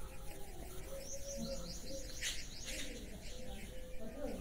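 Faint bird chirps, with a quick run of short high peeps about a second in, over the rubbing of a cloth wiping a whiteboard clean.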